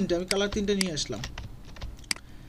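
Computer keyboard and mouse clicks, scattered sharp taps, with a voice talking over the first half.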